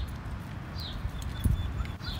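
Outdoor ambience: a low, uneven wind rumble on the microphone with a few dull thumps, while a bird repeats a short descending call about once a second.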